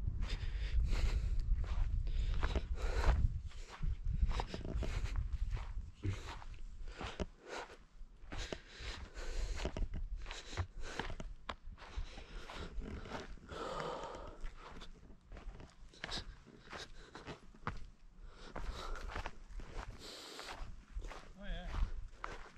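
Footsteps walking over loose stones and rough grass, about two steps a second, with wind rumbling on the microphone for the first few seconds.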